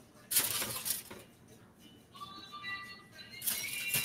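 Aluminium foil crinkling as tomatillos are set down on a foil-lined tray, about a second in and again near the end. Quiet background music with held notes comes in partway through.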